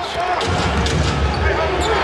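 Crowd noise from a full basketball arena during live play, with several sharp knocks of a basketball bouncing on the hardwood court.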